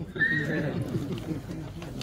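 A man laughing: a short high-pitched note near the start, then a run of quick, short laughs.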